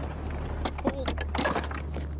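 Large wooden flywheel of a scale-model repeating catapult spinning at speed, giving a steady low rumble with a few sharp knocks.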